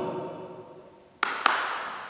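Two sharp slaps about a quarter second apart, ringing in a bare room: a staged slap in a play.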